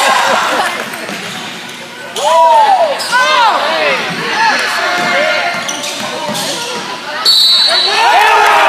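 Basketball being played on a hardwood gym floor: sneakers squeaking in short chirps, the ball bouncing, and spectators' voices echoing around the gym. The squeaking is busiest about two to three and a half seconds in.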